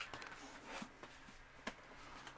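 Quiet handling of a stack of books: faint rustling with a couple of soft knocks, one a little before the middle and one near the end, as the books are shifted.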